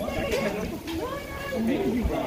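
Several people talking at once around the listener, a crowd's chatter with no single clear speaker, over a low, uneven rumble of wind on the microphone.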